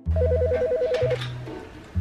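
Landline telephone ringing once, a rapid warbling two-tone trill lasting about a second, over background music with a low bass line.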